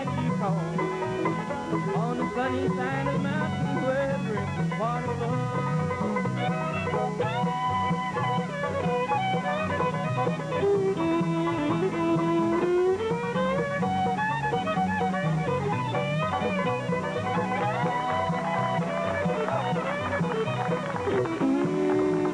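Bluegrass string band playing an instrumental break, a bowed fiddle carrying the sliding lead melody over a steady plucked and strummed rhythm.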